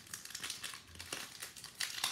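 Trading cards and foil pack wrappers being handled: a run of irregular papery rustles and crinkles, a few each second.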